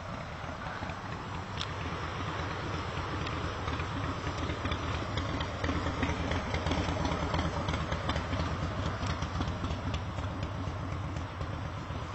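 A motor vehicle's engine running with a low rumble, growing louder through the middle and easing off near the end.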